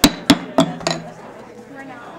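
A gavel struck four times in quick succession, about three strikes a second, each a sharp knock with a short ring: calling the meeting to order.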